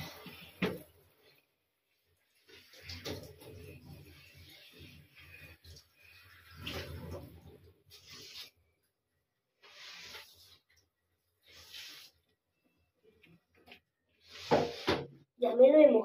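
Water splashing in short, separate bursts as long hair is wetted and worked by hand over a bathtub, with quiet stretches between them; the loudest burst comes near the end.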